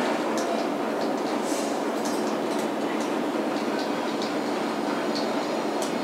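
A steady, even noise that holds at one level throughout, with a few faint ticks on top.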